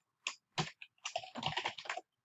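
Computer keyboard keys being typed: a few separate keystrokes, then a quick run of them through the second half.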